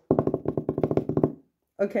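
An improvised drum roll: a quick, even run of about ten beats a second for over a second, then it stops.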